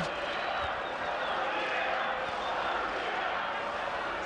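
Football stadium crowd: a steady, even noise of many spectators' voices.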